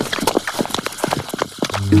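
Many hard-soled footsteps clattering quickly and irregularly. Near the end someone laughs and music with low held notes comes in.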